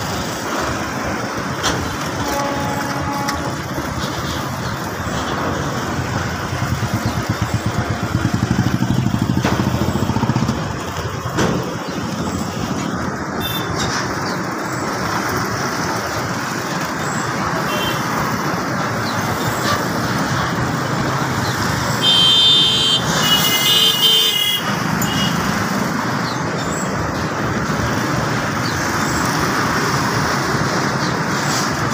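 Freight train of tank wagons crossing a rail bridge: steady rumble and clatter of wheels on the rails, with road traffic passing below. Two short horn beeps about 22 and 24 seconds in.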